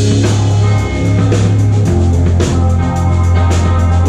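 Live rock band playing: electric guitar, a heavy steady bass line and a drum kit with regular cymbal and snare hits.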